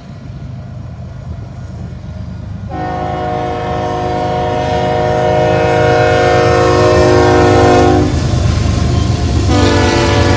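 Canadian Pacific freight locomotive's air horn sounding for a grade crossing as the train approaches: one long blast from about three seconds in to about eight seconds in, then another starting near the end. Under it, the diesel engine and wheel rumble grow louder as the train draws near.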